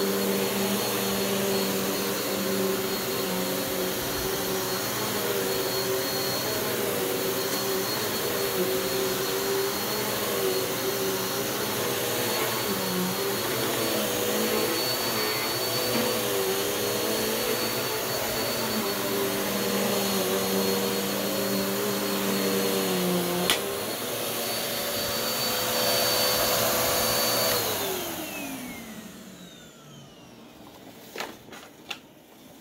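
Bissell CleanView OnePass 9595A upright vacuum with a 12-amp motor, running steadily with a high whine as it is pushed over carpet. A click a little over three-quarters of the way through changes the sound. Near the end the motor is switched off and winds down, falling in pitch.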